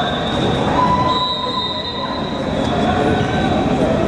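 Indistinct crowd and player chatter in a large sports hall, with several brief high-pitched squeaks over it.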